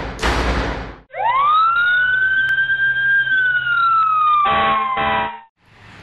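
A pulsing drum beat ends about a second in, then a single fire engine siren wail rises, holds and slowly falls away, with two short blasts near the end.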